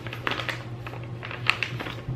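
A clear plastic bag holding two small gear motors is handled and turned in the hands, crinkling with scattered small clicks; one click is sharper, about one and a half seconds in.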